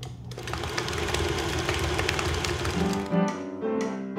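Stand mixer running with a fast, dense rattle for about two and a half seconds. About three seconds in, plucked string music starts.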